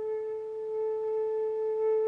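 Concert flute holding a single long, steady note without vibrato.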